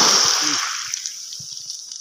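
Water splashing and sloshing, loudest at the start and dying away over about a second.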